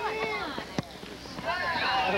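Several voices shouting and calling out across a soccer field during play, with one sharp knock a little under a second in.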